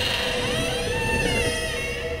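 Eerie horror-style background score: a low rumbling drone under a steady tone, with many wavering high tones gliding up and down.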